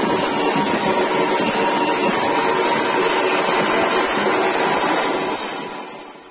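Live Matua kirtan percussion: large drums and brass hand cymbals played together in a loud, dense clatter that fades out near the end.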